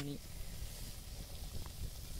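Water boiling vigorously in a large metal pot over a wood fire: a steady bubbling hiss, called 'sarasara'.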